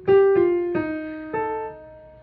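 Piano playing a short line of single notes, the end of the soprano part being picked out: four notes struck in the first second and a half, each left to ring and fade.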